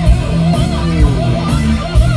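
Live rock band recording, loud: a distorted electric guitar plays a lead line with bending pitches over bass guitar and drums. The guitar sound is fierce.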